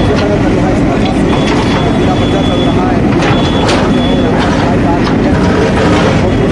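JCB backhoe loader's diesel engine running as its arm and bucket break up rubble, with several sharp cracks and crunches of debris.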